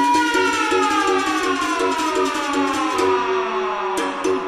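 Electronic dance mix with a siren-like synth tone that holds, then glides slowly and steadily down in pitch, over a repeating riff of short low notes.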